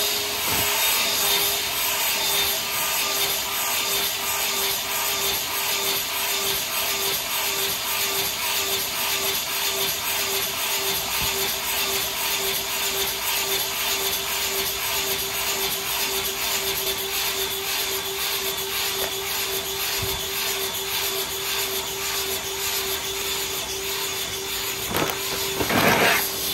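EGO 56V cordless leaf blower running at full power: a steady whine over a rush of air, pulsing regularly as the chair it is strapped to spins. A short louder burst near the end.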